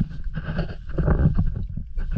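Seawater sloshing and splashing close to the microphone at the rocky shoreline, in irregular low thuds and washes.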